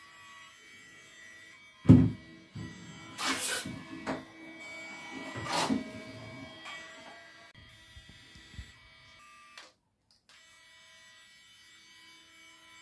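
A Bennol swim-and-spray RC toy shark's small electric motor whirring faintly and steadily as it swims in a bathtub. Several sharp knocks come as it bangs against the tub, the loudest about two seconds in.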